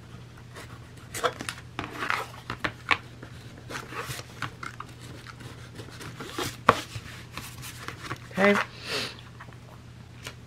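Utility knife blade laid flat and scraped across a thick book board in a series of short strokes, shaving off the fibres raised around hand-drilled holes, with one sharper click about two-thirds of the way in. A low steady hum sits underneath.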